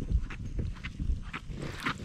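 A spinning reel cranked by hand to bring a hooked fish up through the ice, heard as low rumbling and irregular soft knocks of handling close to the microphone.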